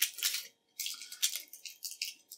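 Thin aluminium foil screen of a shielded Ethernet cable crinkling as fingers peel it back from the twisted pairs, in a string of short crackly bursts.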